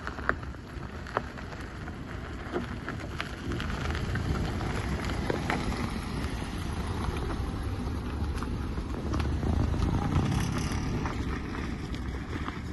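A Toyota Corolla 1.8E drives slowly past on an unpaved road: a low engine-and-tyre rumble that grows louder as it nears and is loudest about ten seconds in. Scattered small clicks run through it.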